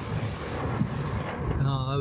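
A steady hiss of heavy rain and water heard from inside a car moving along a flooded road. A man's voice comes in near the end.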